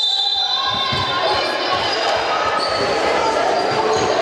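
Basketball game on a wooden sports-hall floor: a ball bouncing and thudding on the court among players' footsteps, with voices echoing in a large hall.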